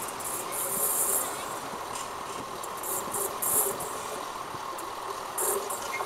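Distant train, out of sight: steady rail noise with a faint steady tone, and short bursts of high hissing about a second in, in the middle and near the end.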